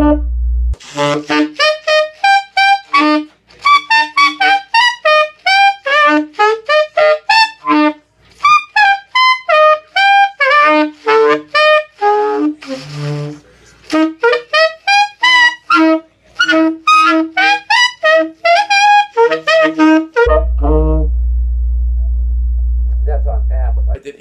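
Tenor saxophone playing quick runs of short separate notes that leap between a low note and the higher overtones above it, as overtone practice. Over the last few seconds a loud, steady low hum comes in underneath: a vibration the player noticed while playing.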